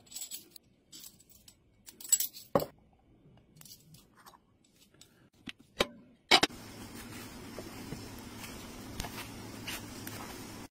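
Metal measuring spoons clinking and jangling, with small taps and scrapes, as spice is measured onto apples in a crock pot. About six seconds in, the crock pot's glass lid is set down with a sharp clunk, followed by a steady low hum.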